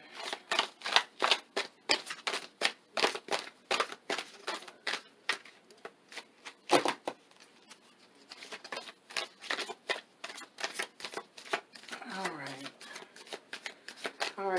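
A deck of oracle cards being shuffled by hand: a quick run of short card clicks and slaps, about three or four a second, with a few pauses.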